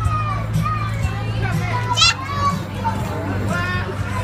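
Din of many children's voices, chatter and shouts over background music with a steady bass line. A sharp, high squeal stands out about halfway through.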